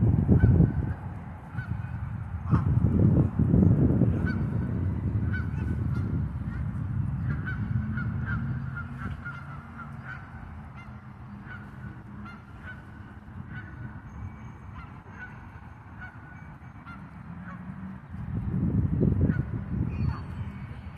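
Canada geese calling with short, repeated honks from the flock. Spells of low rumble come and go near the start, a few seconds in, and near the end.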